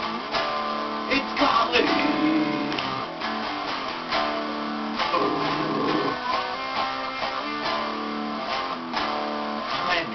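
Guitar playing: plucked and strummed chords in a steady pattern, the notes changing every second or so. A brief wavering sound rises over it about two seconds in, and again about five seconds in.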